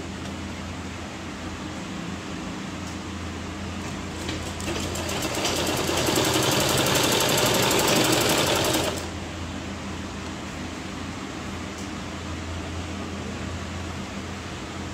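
Domestic sewing machine stitching a seam through black fabric: it runs softly at first, picks up into a fast, even rattle about four seconds in, and stops about nine seconds in. A steady low hum runs underneath.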